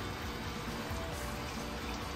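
Background music, with a steady trickle of water running beneath it, typical of the nutrient solution flowing through NFT hydroponic troughs.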